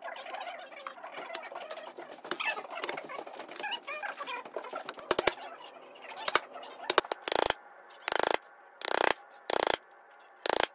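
Bench chisel paring out dovetail waste in walnut: a dense, irregular run of small cuts and scrapes, then four short scraping strokes, each under half a second and spaced under a second apart, in the second half.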